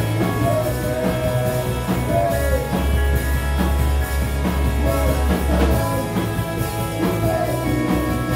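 Live rock band playing: distorted electric guitars, bass guitar and drum kit, with a male voice singing into a microphone over them.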